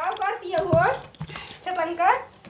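A woman's voice making three short wordless calls, each rising in pitch.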